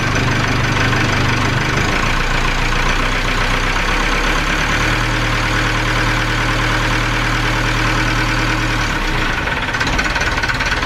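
Inboard marine engine of a small yacht idling steadily, its low note shifting slightly a few times.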